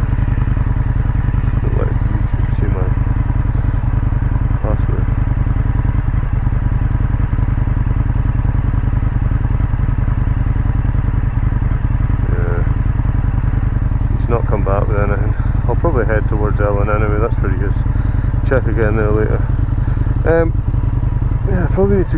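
Indian FTR1200's V-twin engine idling steadily at standstill, a low even rumble with no change in pitch.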